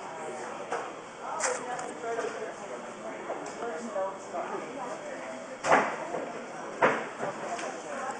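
Low, indistinct talking voices, with two sharp taps a little over a second apart in the second half.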